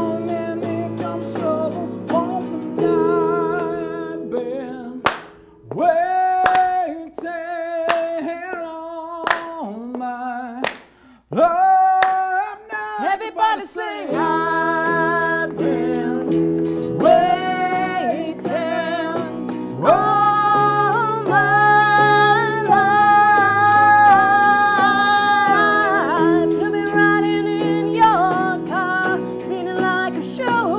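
Live song on hollow-body electric guitar and keyboard with a sung lead vocal. About four seconds in, the accompaniment thins out and the voice carries held notes with vibrato, broken by short pauses. From about fourteen seconds the full guitar and keyboard backing comes back in under the singing.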